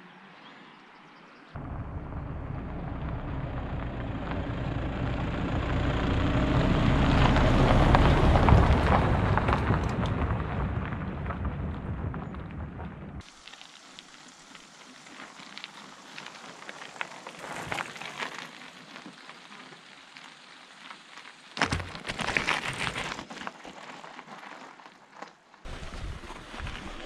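Wind buffeting an action camera's microphone during a mountain-bike ride: a loud, low rumble that swells and then cuts off abruptly about halfway through. After it, quieter tyre crunch and rattle on a stony track with scattered clicks, and a louder burst a few seconds before the end.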